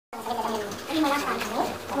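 Indistinct voices talking, with no words that can be made out.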